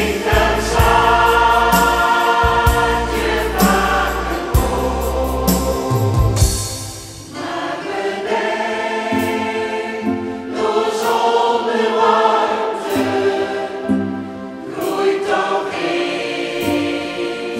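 Choir singing with instrumental accompaniment. A strong deep bass carries the first six seconds, then drops away, and the music thins briefly before the voices build again.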